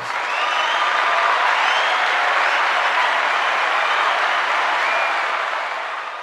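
Applause sound effect: steady crowd clapping that holds for about five seconds, then fades out near the end.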